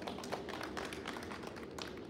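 Scattered applause: hand clapping from a small gathering in a large school gymnasium, in quick, irregular claps.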